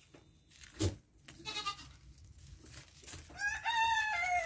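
Farm animal calling: a short wavy call about a second and a half in, then one long pitched call starting near the end. A single sharp click comes about a second in.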